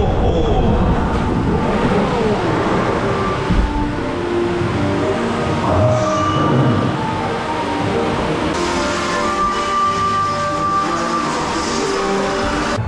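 Dark-ride soundtrack music with held, gently moving notes, over a steady low rumble and hiss from the ride.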